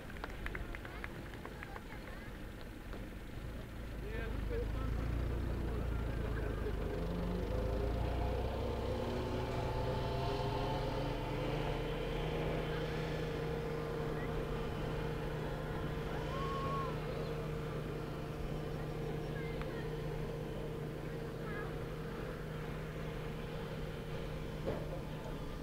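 Truck engine running steadily, swelling about four seconds in and then holding an even drone: the water truck that sprays the speedway track.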